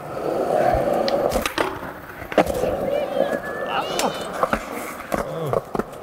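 Skateboard wheels rolling over concrete, with a few sharp clacks of the board, the loudest about two and a half seconds in.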